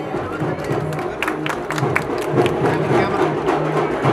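Music playing over the chatter of a crowd, with a few sharp clicks about a second in.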